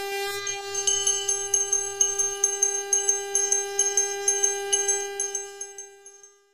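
A conch shell (shankh) blown in one long held note, with a small ritual bell rung rapidly over it, about four to five strikes a second; the bell strikes fade near the end.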